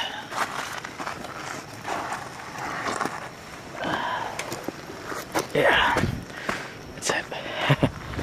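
Footsteps crunching and scuffing on sandy gravel in an uneven rhythm.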